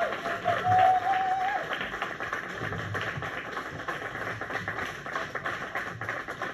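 The song ends on a held vocal note that fades out early, while the backing music carries on quietly underneath. Audience applause of many hand claps runs through it all.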